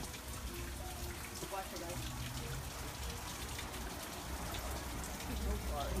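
Steady splashing hiss of water running into a small stone-edged garden pond, with faint voices in the background.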